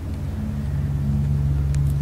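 Steady low hum of several deep tones held together, growing slightly louder.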